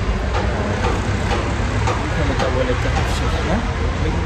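Low conversational voices over a steady low background rumble.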